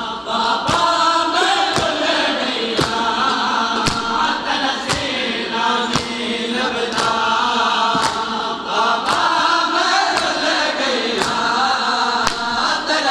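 Voices chanting a noha, with sharp slaps of hands striking chests (matam) in time, about one strike a second.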